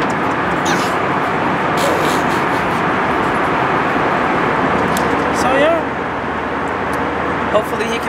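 Steady rushing cabin noise of a jet airliner in flight, engines and airflow, a little quieter for the last two seconds. A short vocal sound rises and falls about five seconds in.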